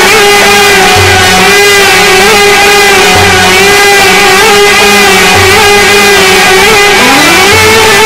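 Instrumental music from a small Egyptian ensemble of violin, nay and keyboard: one long held melodic note with slight wavering over a low bass note that repeats about every two seconds, sliding up to a higher note near the end.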